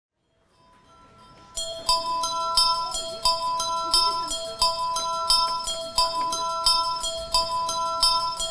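Music: a repeating pattern of ringing bell-like notes on a few pitches, about three a second. It fades in from silence and comes in fully about a second and a half in.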